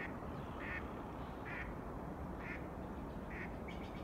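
A bird gives five short calls, about one a second, over a steady rushing noise from the waterfall.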